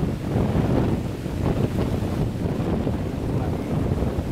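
Wind buffeting the microphone: a steady low rumble that gusts up and down.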